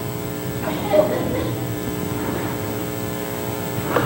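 Upright vacuum cleaner running: a steady electric motor hum and whine.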